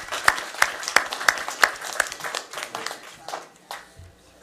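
Applause in a small meeting room, with a few loud nearby hand claps standing out from the rest, dying away near the end.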